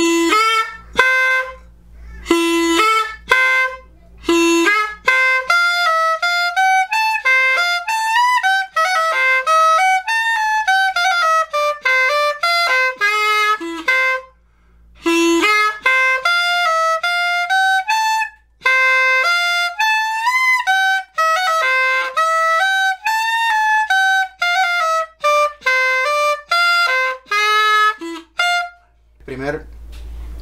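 Flauta de millo, the Colombian cane transverse clarinet with a reed cut into its tube, playing a cumbia melody as a quick run of short, separate notes with throat articulation (garganteo). There is a short break about halfway, and the playing stops just before the end.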